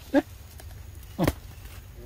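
Two short squeaky calls from young macaques, about a second apart. The second is a quick squeal that drops steeply in pitch.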